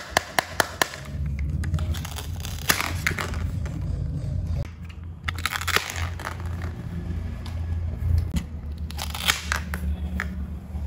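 Wooden toy knife cutting plastic toy vegetables held together with hook-and-loop fastener. A few sharp taps come at first, then crackly tearing rasps as the halves are pulled apart, about three times. A steady low hum sits underneath.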